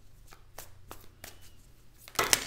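Tarot deck being shuffled by hand: a run of soft, quick card clicks, about six or seven in two seconds.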